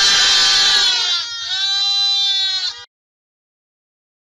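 A crowded pen of lambs bleating all together in answer to a person's "maa": two long, loud chorus calls, the second starting about a second and a half in. The sound then cuts off suddenly.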